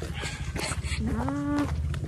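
A single short animal call about a second in, rising briefly then held, over a steady low rumble.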